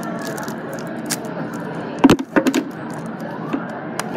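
A small cardboard crayon pack being worked and torn open by hand close to the microphone, with a short, loud cluster of snaps and crackles about halfway through. Busy-room background noise throughout.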